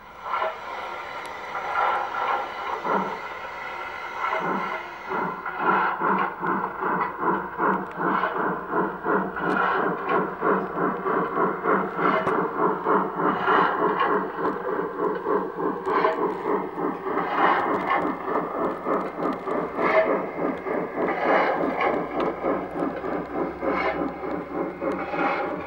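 Garden-scale model steam locomotive's sound unit chuffing. It starts irregularly, then settles into a steady, even chuff rhythm from about five seconds in as the engine runs.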